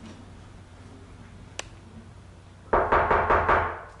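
Rapid knocking on a flat's door near the end, about six sharp knocks in a second, echoing in a stairwell. A single sharp click comes earlier.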